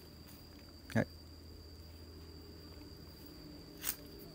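Quiet outdoor background with a steady high-pitched insect drone. A short low sound comes about a second in, and a brief sharp sound near the end.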